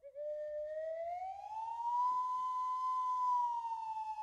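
A slide whistle sounds one long note. It starts low, glides smoothly upward over about two seconds, holds at the top, then sinks slowly.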